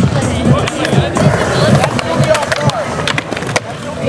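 Skateboard wheels rolling on concrete, with several sharp board clacks, over music.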